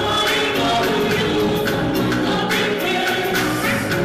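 Live concert music played loud over a PA, with a steady drumbeat under several voices singing together.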